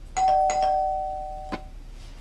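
Electronic two-tone doorbell chime: a higher note then a lower one, each struck once and fading away over about a second and a half. A short sharp click comes about a second and a half in.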